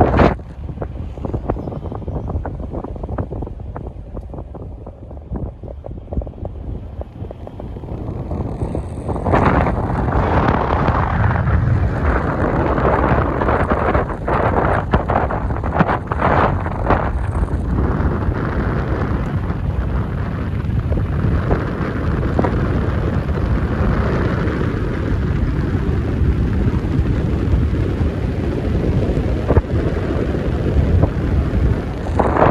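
Wind buffeting the microphone at an open car sunroof, over the low rumble of the car driving slowly. The wind grows louder about nine seconds in.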